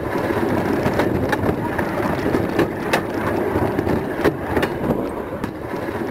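Horse-drawn rail cart rumbling and rattling along a narrow-gauge track, a steady jolting ride with irregular sharp clicks.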